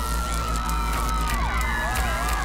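Cartoon electrical-surge sound effect: a wavering electronic whine that dips and loops up and down, over a steady low hum and crowd noise.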